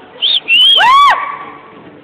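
High-pitched whoops from an audience member cheering a performer: a short squeal, then a longer 'woo' that rises and falls in pitch.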